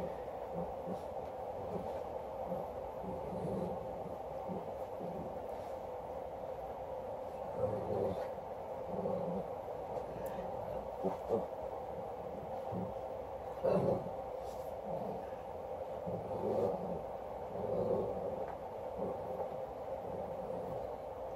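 Quiet steady room hum, with a few faint, brief handling noises now and then as pieces of jewelry are picked up and held out.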